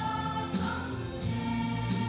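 A choir singing a gospel song with musical accompaniment, in long held notes.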